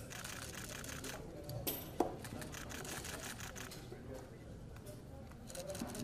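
Rapid runs of sharp clicks, with one louder click about two seconds in, over faint background voices.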